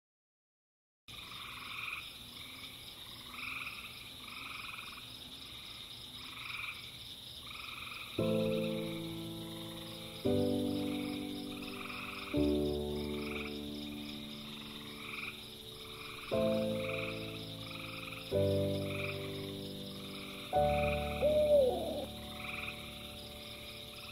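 A night chorus of frogs calling in a regular pulsing rhythm over a steady high insect drone, starting about a second in. From about eight seconds in, slow music chords are laid over it, one roughly every two seconds, and they are the loudest sound.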